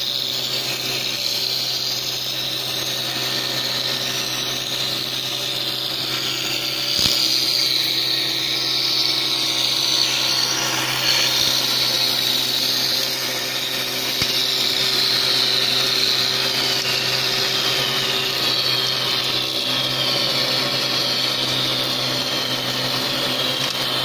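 Automatic round wood stick machine running: a steady motor hum under a high whine that wavers in pitch, a little louder from about seven seconds in.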